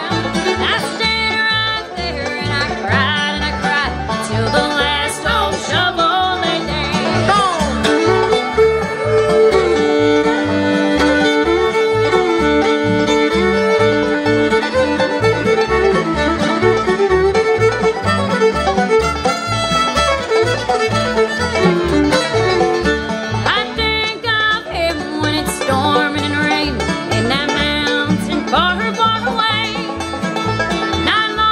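Live bluegrass band playing an instrumental break of fiddle, banjo and guitar over a steady low beat. The fiddle plays long held notes through the middle.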